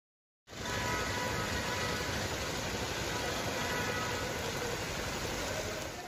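Heavy rain pouring onto a wet paved street, a steady hiss that starts about half a second in.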